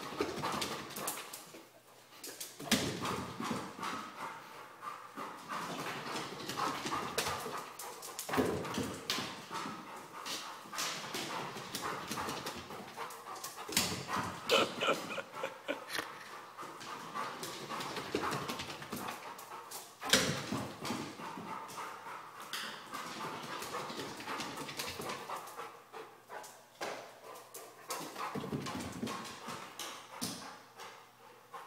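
A large dog's claws and paws clattering on hardwood stair treads as it runs up and down the stairs, in quick flurries of clicks and thumps with louder bursts now and then.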